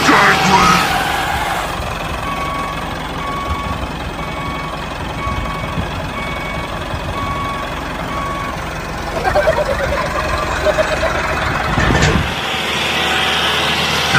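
Steady heavy-vehicle engine rumble with a reversing alarm beeping in an even run of short tones from about two seconds in until near nine seconds; the engine sound cuts off suddenly about twelve seconds in.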